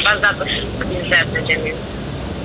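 A voice talking over a smartphone on speakerphone, above a steady low rumble of street traffic.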